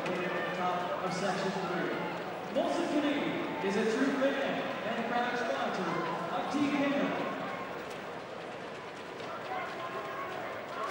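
A man's voice heard faintly in the arena, over the steady noise of the hockey crowd; the voice stops about seven seconds in.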